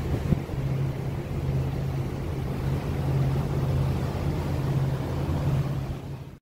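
Motorboat engine running steadily under way, a low even hum with water and wind noise over it, and a brief knock shortly after the start.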